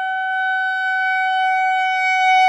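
Saxophone holding one long, steady high note.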